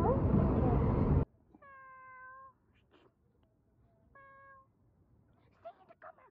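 Domestic cat meowing twice: a longer call, then a shorter one, each fairly level in pitch, with a brief wavering call near the end. Before the meows, a loud rumbling outdoor noise runs for about a second and cuts off suddenly.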